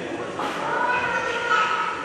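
A person's voice holding one long, steady high note that begins about half a second in and lasts over a second.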